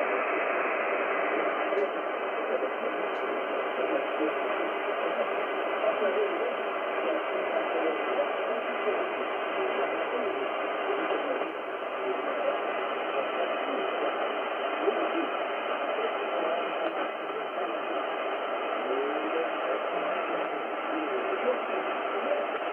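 Weak shortwave broadcast from Rádio Clube do Pará on 4885 kHz, played through an Icom IC-R71E communications receiver in upper sideband: a faint voice under steady hiss and static, with all treble cut off sharply by the receiver's narrow filter.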